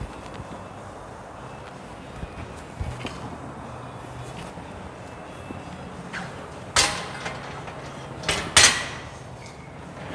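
Loaded barbell set back onto the hooks of a steel squat stand: a sharp metal clank about seven seconds in, then a quick double clank a second and a half later, over low steady background hum.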